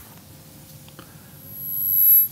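Paper brochure being unfolded and handled: faint rustling with a light click about a second in, growing louder near the end.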